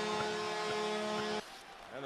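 Arena crowd noise after a home goal, with a steady held tone over it, cutting off abruptly about one and a half seconds in and giving way to quieter rink sound.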